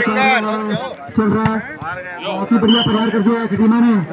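A man's loud voice calling out, with long drawn-out vowels, and a single sharp knock about a second and a half in.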